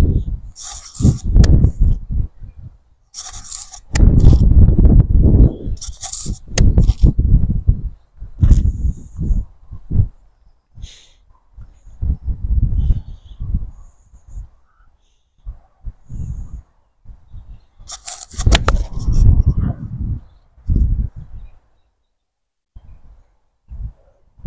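Wind buffeting the microphone in irregular gusts, with a few sharp cracks of an iron striking a golf ball off a range mat, one near the start, one about six seconds in and one about three-quarters of the way through.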